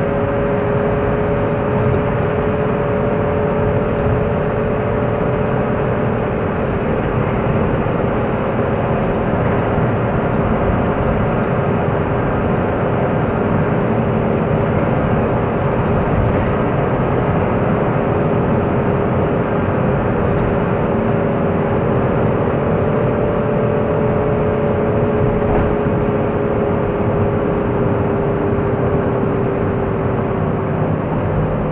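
A car driving at a steady cruising speed: continuous engine and road noise with a steady two-note drone that drifts slightly in pitch.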